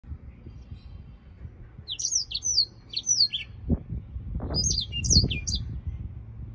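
Caged black-throated canary singing: two runs of quick, high, downward-slurred notes, the first about two seconds in and the second about a second after it ends. Under the song is a low rumbling noise that swells in a few bursts near the middle.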